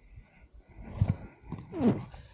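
A snowboarder's voice: a loud exclamation falling in pitch near the end, with a thump about a second in.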